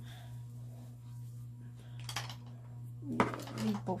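Makeup products being handled off to the side: a few sharp clicks and clatters of small containers, the loudest cluster near the end, over a steady low hum.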